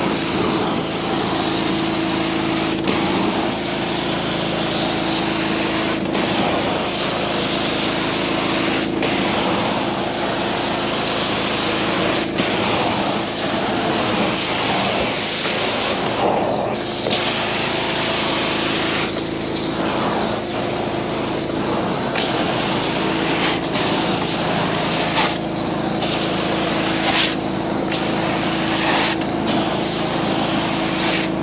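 Hot-water carpet extraction wand drawn across carpet, its truck-mounted vacuum running with a steady roar and hum. The hiss drops away briefly a few times as the strokes change.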